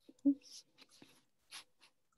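A few faint, brief sounds over a video call: a short murmured voice sound about a quarter second in, then soft hissy rustles and clicks.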